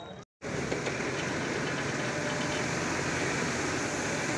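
After a brief gap just after the start, a sanitising tanker truck's engine-driven pump runs steadily, with the hiss of disinfectant spraying from its hose.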